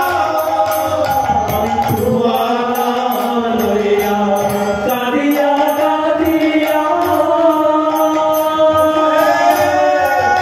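Bengali devotional kirtan singing: male voices sing long, drawn-out lines over a sustained harmonium, with small hand cymbals (kartal) keeping a steady beat.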